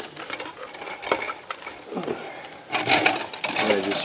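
Handling noise from a cardboard drink carton and plastic cups: scattered rustles and light knocks, then a louder clatter about three seconds in. A man's voice starts near the end.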